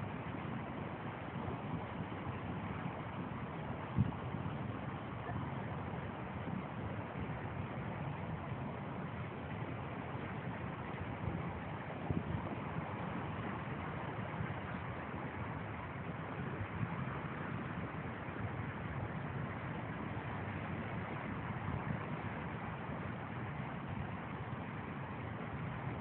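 Steady wind noise on a phone microphone outdoors, with a single sharp knock about four seconds in and a few faint ones later.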